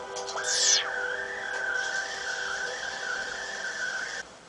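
Electronic soundtrack tone: a quick downward sweep, then a single high, slightly wavering whine held for about three seconds.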